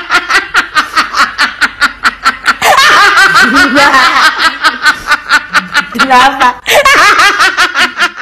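A person laughing in a fast, even run of short, high-pitched bursts, about five a second, with a couple of longer, wavering stretches in the middle and near the end.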